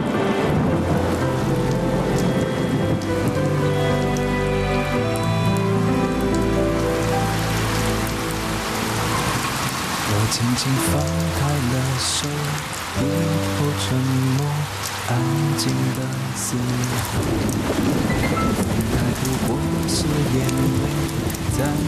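Steady rain falling, growing heavier about a third of the way in, under a soft music score of slow held notes.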